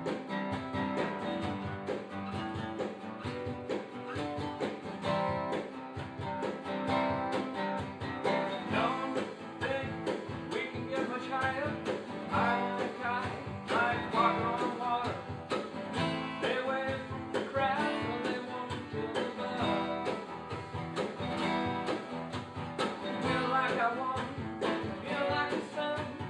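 Two steel-string acoustic guitars strummed together in a steady rock rhythm, with a man's singing voice joining over them about eight seconds in.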